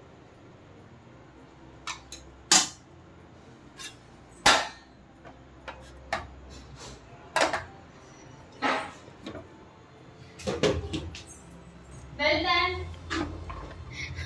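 Stainless steel dishes clinking and knocking: a steel cup being packed with rice and turned out onto a steel plate, in a string of separate knocks about a second apart with a quicker cluster near the end. A short burst of voice comes just before the end.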